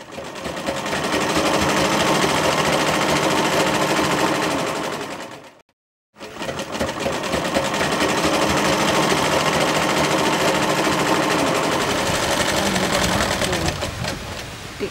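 Flying Man sewing machine running at speed, stitching with a rapid, even clatter. It runs in two stretches, broken by a short silence about five and a half seconds in.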